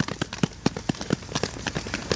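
A small group clapping: a quick, irregular run of hand claps.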